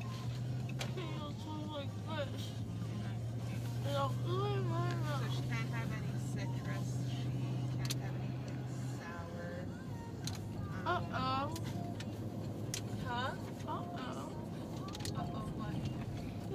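Steady low hum and rumble of a car heard from inside the cabin; the hum drops away about nine seconds in. Brief indistinct voice sounds come and go over it.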